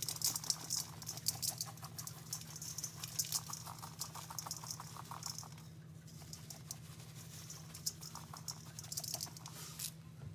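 Powder and small granules shaken from a container onto damp sponges in a stainless steel bowl: a fine, rapid patter of grains landing, in two spells with a short pause just past the middle. A low steady hum runs underneath.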